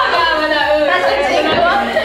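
Speech only: several women chattering over one another, laughing as they talk.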